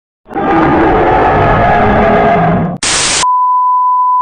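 A loud, noisy jumble of sound for about two and a half seconds, then a brief burst of TV static hiss. After that comes a steady, high-pitched test-signal beep, the tone played under a 'technical difficulties' colour-bar screen.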